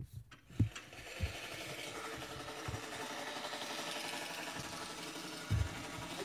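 Swardman Electra battery-powered reel mower running, its spinning cylinder reel cutting grass as it is pushed across the lawn; the steady whirring comes in about a second in, with a few dull thumps over it.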